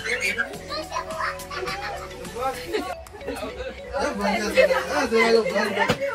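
Background music with steady held notes, and several people's voices talking and calling over it, a child's among them.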